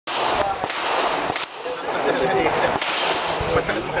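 A few sharp gunshot cracks, some in quick pairs, over a steady background of voices talking.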